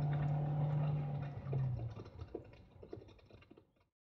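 Old-time radio drama soundtrack between lines of dialogue: a low steady hum for about two seconds, then scattered light clicks. It fades and cuts to silence just before the end.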